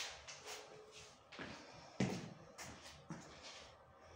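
A few soft knocks and thumps from a person moving about and handling things near the microphone, the sharpest about two seconds in.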